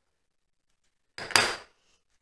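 Near silence, then one short sharp knock and clatter about a second and a half in, from a small hand tool being handled against the wooden workbench.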